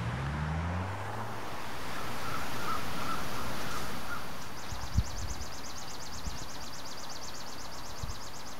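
Outdoor park ambience of traffic on a nearby road, with a passing vehicle's hum fading away in the first second, a few bird chirps, and a single thump about five seconds in. In the second half a fast, high-pitched ticking trill runs on steadily.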